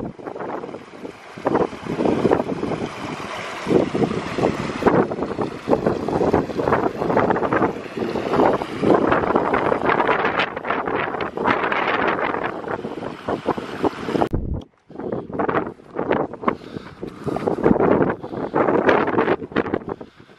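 Wind buffeting the microphone in irregular gusts, a dense rushing noise, broken once by a brief sudden gap about fifteen seconds in.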